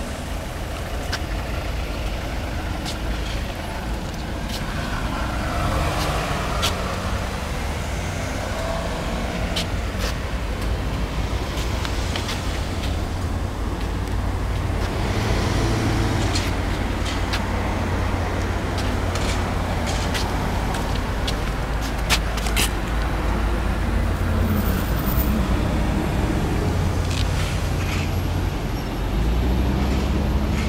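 Lamborghini Murciélago LP650-4 Roadster's V12 idling with a steady low rumble, scattered with short sharp ticks; the rumble swells slightly near the end.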